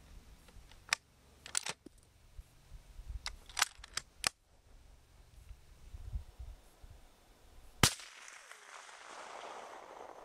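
Several short, sharp clicks and cracks from rifle gear: one about a second in, a quick pair near one and a half seconds, more around three and a half to four seconds, and the loudest single crack near eight seconds, over a low rumble.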